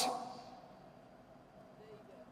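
A woman's voice trailing off at the end of a phrase, its echo dying away within about half a second, then a pause with only faint room tone.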